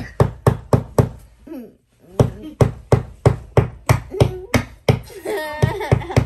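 Small hammer tapping a nail into a wall in a steady run of sharp blows, about three a second, with a short break about two seconds in.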